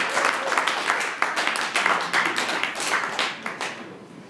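A small audience of dinner guests clapping, the applause thinning and dying away near the end.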